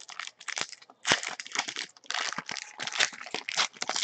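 Plastic and foil trading-card pack wrapping crinkling and crackling as it is handled and peeled open by hand, in an irregular run of short crackles.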